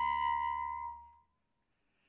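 Bass clarinet holding a low sustained note that fades away about a second in, leaving silence.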